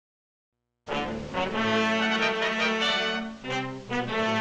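Silence for nearly a second, then a brass-led orchestral fanfare starts, in phrases with a brief dip near the end. It is the opening of a 1940s cartoon's soundtrack score.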